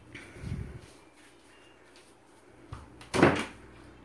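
Handling noises: a soft low thump, then a light click, then a loud sharp knock about three seconds in, as objects are picked up and set down on a hard surface.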